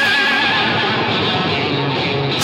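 Hard rock song: a held electric guitar note with a wide vibrato rings out while the drums and bass drop away, and the full band crashes back in just after.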